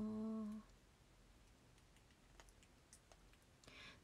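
A woman's voice humming a short, steady "mm" that stops about half a second in, followed by near silence with a couple of faint clicks.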